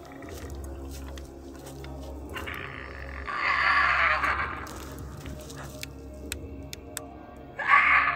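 Steady background music, over which an unidentified animal gives two loud, harsh cries: a long one starting about two and a half seconds in and lasting about two seconds, and a short, sharp one near the end.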